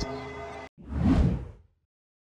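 A whoosh transition sound effect for a TV news station-ID bumper. It swells up just under a second in and fades away within about a second.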